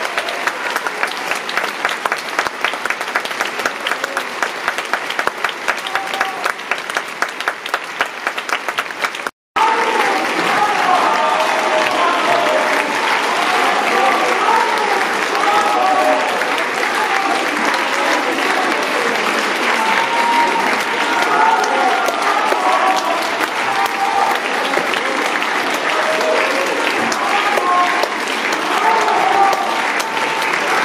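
Theatre audience applauding, dense continuous clapping. It breaks off for a moment about nine seconds in, then carries on louder, with many voices calling out over the clapping.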